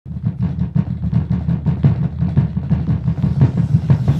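Two fists pounding rapidly on a desktop in a drumroll, about eight hits a second.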